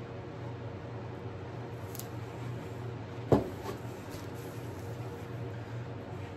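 A steady low hum with one sharp knock about three seconds in.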